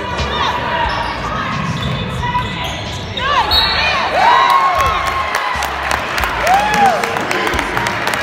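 Basketball game sound on a hardwood gym floor: a ball bouncing and sneakers squeaking in a few short rising-and-falling chirps, over a background of voices from the gym.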